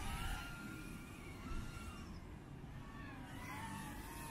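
Brushless motors of an 85 mm whoop FPV drone in flight: a faint whine that holds a steady pitch for a moment, then rises and falls with the throttle.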